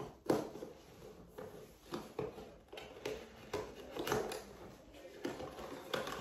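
Cardboard headphone box being worked open by hand: an irregular run of small clicks, scrapes and rustles as its seal and flaps are pulled.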